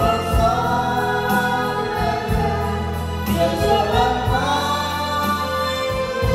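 A man and a woman singing a Vietnamese ballad together, with long held notes that glide in pitch, over electronic keyboard accompaniment with a bass note about once a second.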